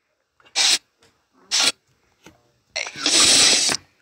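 Cartoon sound effects: brief rasping, scraping noises, two short ones and then a longer one near the end, fitting a block of ice being pushed across a floor.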